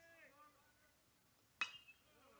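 Metal baseball bat striking a pitched ball: one sharp ping about one and a half seconds in, ringing briefly. The ball comes off the top of the barrel, under the ball, for a fly ball. Faint distant voices before it.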